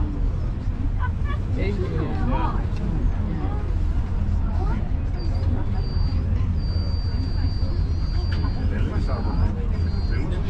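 Steady low rumble inside a moving Roosevelt Island Tramway aerial cabin, with passengers talking quietly in the background. From about five seconds in, a thin high-pitched whine comes and goes in short stretches, held longest around seven to eight seconds.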